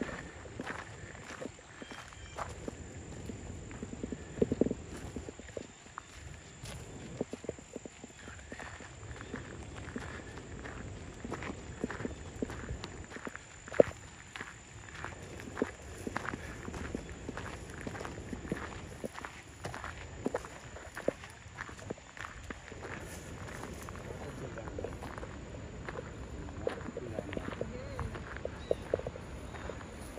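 Footsteps of several people walking on an outdoor path: a steady run of irregular crunching steps, with one sharper knock about fourteen seconds in.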